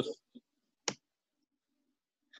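End of a spoken word, then a single sharp click just under a second in, and quiet room tone.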